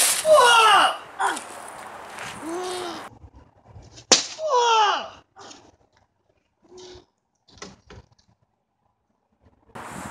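A long Viking spear with a narrow steel head, driven overarm, strikes a hand-hammered 14–15 gauge steel breastplate once about four seconds in: a single sharp impact as the point pierces the plate. Vocal exclamations come just before and right after the strike, and a few faint knocks follow.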